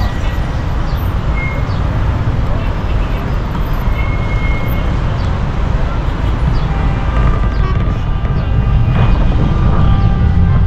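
Steady road traffic on a busy city street: a continuous rumble and hiss, heaviest in the low end.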